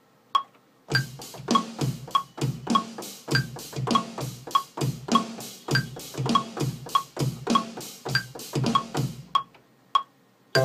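Software metronome clicking about once every 0.6 s, joined about a second in by an electronic drum-kit beat from Ableton Live triggered with a Novation Launchkey; the beat stops shortly before the end while the click goes on.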